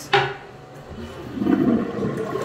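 A sharp click near the start, then a toilet flushing: water rushing into the bowl, building from about a second in.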